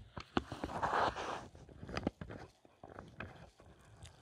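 Handling noises at a workbench: a scatter of light clicks and taps, with a brief rustle about a second in.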